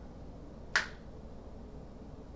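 A single sharp finger snap about three-quarters of a second in, with only faint room tone around it.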